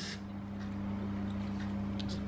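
Steady low electrical hum from a kitchen appliance running.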